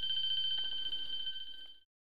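Electric class bell ringing with a steady high tone, signalling the break between lecture periods. It fades and then cuts off suddenly shortly before the end.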